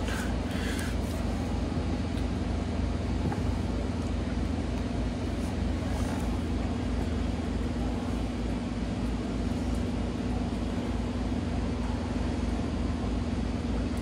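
A steady low mechanical hum with a rumble underneath, unchanging throughout.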